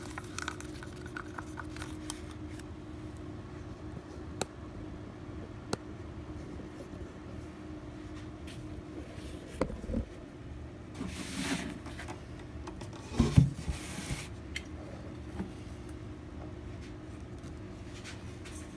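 A wooden craft stick stirring epoxy in a small plastic cup: faint scraping and a few light clicks over a steady low hum. About eleven seconds in come rustling handling sounds, and a thump about two seconds later is the loudest sound.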